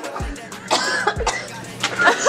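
A person coughing and gagging after swallowing a foul-tasting blended mystery smoothie, the strongest cough about a second in, over background music.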